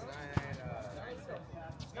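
Men's voices talking and calling out during a basketball game, with one sharp basketball bounce about half a second in.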